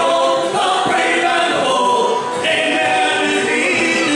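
Live Irish folk band singing a ballad, male and female voices together in harmony through the stage PA.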